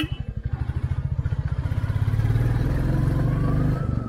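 Motorcycle engine running with a rapid even beat at low speed, the revs climbing in the second half with a faint rising whine, then easing briefly near the end.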